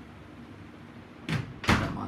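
A door banging twice in quick succession, a short sharp sound about a second and a quarter in and a louder one just after, over the steady low hum of a ceiling fan running.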